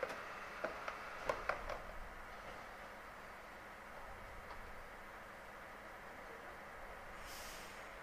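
Faint steady background hum with a handful of light clicks and knocks in the first two seconds as the fuel nozzle is hung back on the pump, then a brief hiss near the end.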